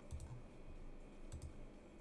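Two computer mouse clicks, about a second and a quarter apart, each a quick press-and-release double tick with a soft thud.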